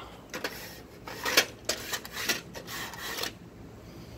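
Irregular clicks, scrapes and rustles of small objects being handled, about a dozen short sounds over roughly three seconds.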